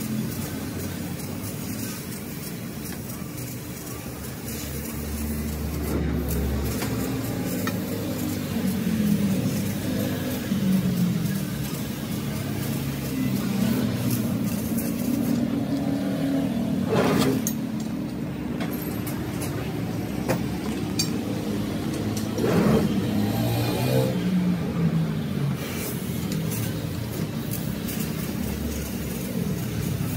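CNC sheet-steel cutting machine running: a steady mechanical hum with a constant tone, broken by two short loud bursts of noise, about seventeen and twenty-two seconds in.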